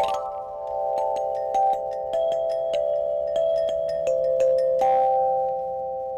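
Outdoor metal tubular chimes struck with a mallet. It opens with a quick upward run across the tubes, then a slow tune of single notes about twice a second, each ringing on and overlapping the next.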